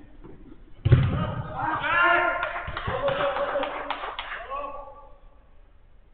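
A loud thump of a football being struck about a second in, followed by several seconds of men shouting across the pitch.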